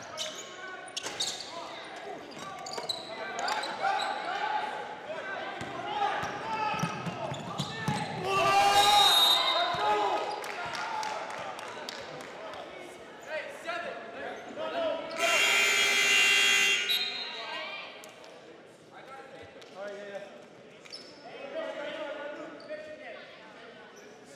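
Indoor basketball game in a gym hall: players' and spectators' voices echoing, with a ball bouncing on the hardwood. About eight seconds in the voices swell loudly. Around fifteen seconds in a loud, steady scoreboard horn sounds for about two seconds during a stoppage in play.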